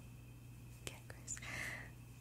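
Soft whispering, breathy and faint, with a small click about a second in.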